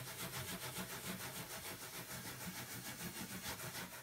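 Knit exfoliating mitt rubbed quickly back and forth over a chalk-painted wooden top, buffing the paint to a finish instead of waxing it: a rapid rubbing that pulses about five or six times a second.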